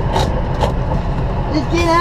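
Semi truck's diesel engine idling, a steady low rumble heard from inside the cab, with a few short clicks in the first half-second.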